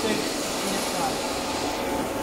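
Steady mechanical hum and hiss of radiator test-bench machinery running, with faint voices over it.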